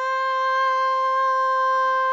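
A man's voice holding one long, high sung note, steady in pitch and unaccompanied.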